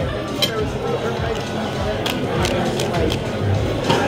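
Metal cutlery clinking against ceramic plates, several sharp clicks over a steady murmur of voices in a busy restaurant.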